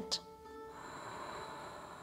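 Quiet background music of long, steady held tones, with a soft breathy hiss, like an exhale through the nose, swelling about a second in.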